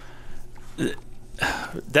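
A man's voice between words: a short vocal sound a little under a second in, then a breath taken just before he speaks again.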